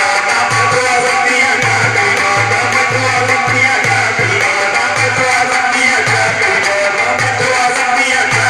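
Qawwali music: a group singing over a steady dholak drum beat of two to three strokes a second, with rhythmic hand-clapping.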